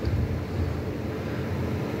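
A steady low hum under a constant noise, with no speech and no distinct events.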